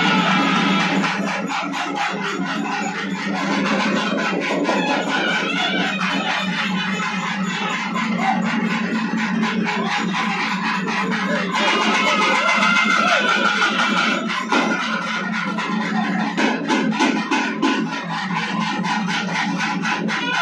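Tamil temple-festival melam music: fast, dense drumming with a wavering melody line above it, which accompanies the possession dance.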